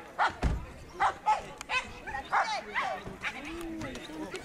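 A dog barking, a string of short barks about half a second apart, with people talking.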